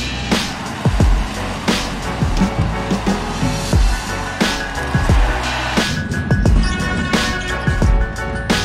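Background music with a steady beat: deep kick-drum hits and a sharp snare-like hit about every second and a half, over held synth tones.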